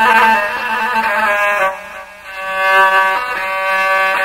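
Rababa, the bowed one-string Bedouin fiddle, playing a slow melody of held notes in a traditional ataba accompaniment, with a short dip about two seconds in.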